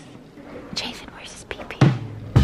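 Quiet whispering, with a short loud sound that falls sharply in pitch near the end.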